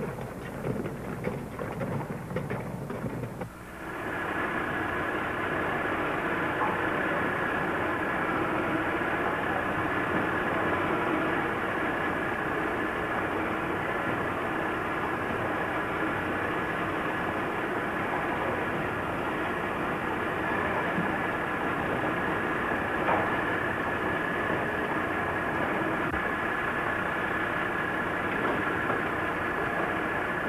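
The tail of a passage of piano music, then from about four seconds in a steady din of workshop machinery with a constant high whine running through it.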